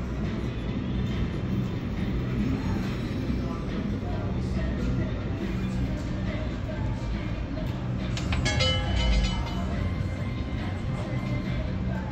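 Ball of an automated roulette wheel rolling around the track under its glass dome, then clattering as it drops and bounces into a pocket about eight seconds in.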